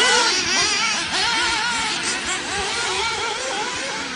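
Several nitro-engined 1/8-scale RC off-road buggies racing, their small engines buzzing at high pitch and overlapping, each one's pitch rising and falling as it revs up and backs off around the track.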